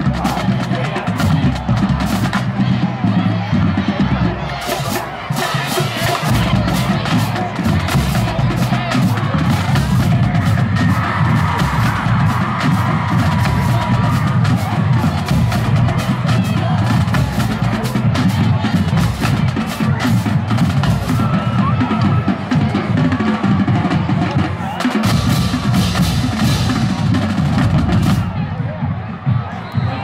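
Marching band playing a stand tune in the bleachers: snare and bass drums beating steadily under brass, with crowd noise around it.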